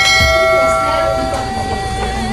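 A bell-like chime rings once and dies away over about a second and a half, over background music with a singing voice.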